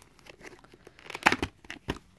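Plastic VHS clamshell case and its paper insert being handled and opened: a run of small clicks and crinkling rustles, loudest about a second and a quarter in, with a sharp click near the end.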